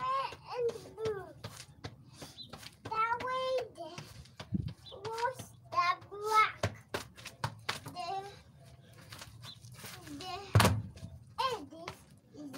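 A toddler's high voice vocalizing on and off without clear words, with a few soft thuds of footballs being kicked; one sharp, loud kick about ten and a half seconds in is the loudest sound.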